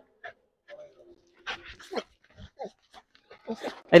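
A Rottweiler whining faintly in a few short, scattered sounds, with a man's voice coming in near the end.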